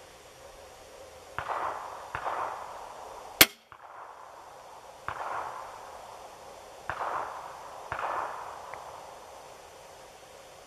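A single loud, sharp snap from an Excalibur Matrix Bulldog recurve crossbow as it is fired, about three and a half seconds in. Several softer, short fading sounds of unclear source come before and after it.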